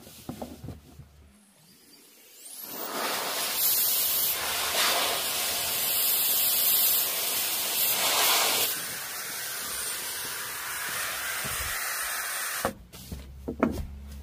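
Air hissing steadily through a sleeping pad's valve for about ten seconds, swelling twice and then stopping suddenly. A few short clicks and rustles of handling come at the start and near the end.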